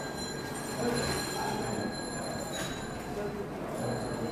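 Whiteboard duster wiping across a whiteboard, a rubbing sound as the marker writing is erased.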